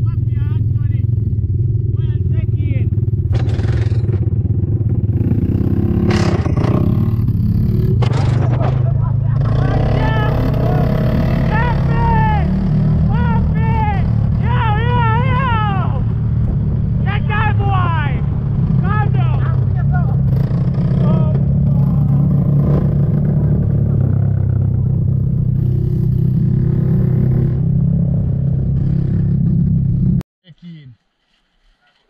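Quad bike (ATV) engine running steadily as it is ridden over a rough dirt road, a constant low drone with a few knocks from the bumps around six to eight seconds in.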